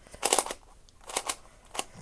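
Plastic Meffert's 4x4 puzzle cube being turned by hand: a quick run of clacking layer turns about a quarter second in, then a few single clicks spaced out over the next second and a half.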